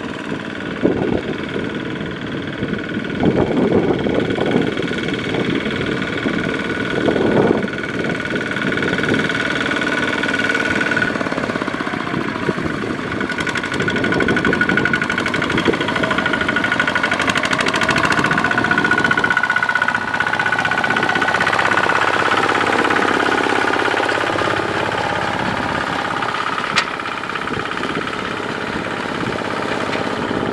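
Kubota ZT155 single-cylinder diesel engine of a two-wheel power tiller running under load as it pulls a loaded trailer through mud, its pitch dipping and climbing back again about two-thirds of the way through.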